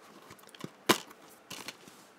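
Plastic Blu-ray case being handled and opened: a few small clicks, then one sharp snap about a second in, followed by lighter clicks.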